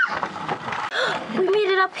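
A child's high-pitched voice: a brief squeal right at the start, a second or so of noisy rustle, then a short high word near the end.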